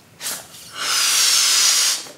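A quick breath in, then one long, forceful breath blown into a balloon, inflating it, lasting just over a second.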